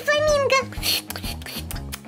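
A high-pitched voice giving a short gliding squeal at the start, over background music.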